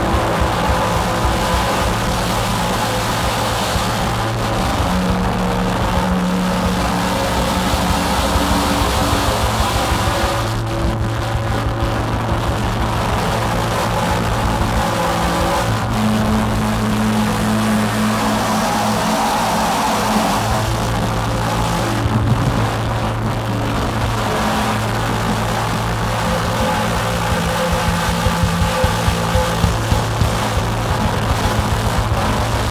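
Live experimental electronic music: a dense, noisy synthesizer drone with held low notes that shift every few seconds, with a drum kit played along and sharper hits near the end.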